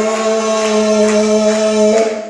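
Worship singing: voices holding one long, steady chord, which cuts off just after the end.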